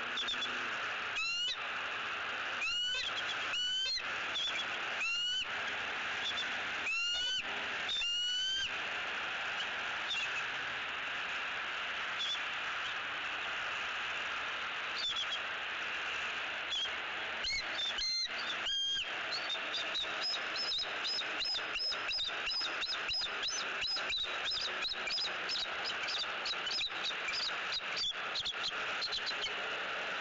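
Bald eagles calling. About seven separate high, piping calls fall in pitch over the first ten seconds, then from about twenty seconds a fast run of short, high chittering notes comes several a second, as the pair begins mating. A steady hiss runs underneath.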